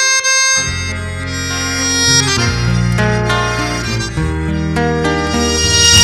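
Live folk ensemble playing in C minor: a piano accordion carries sustained chords and melody over two acoustic guitars, with deep bass notes coming in about half a second in.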